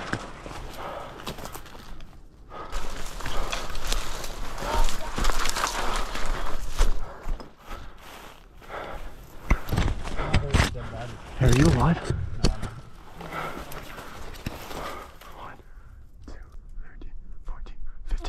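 Footsteps crunching through dry leaf litter and a body pushing through dry, twiggy brush, with irregular crackling and rustling of leaves and snapping twigs. Low voices come in briefly in places.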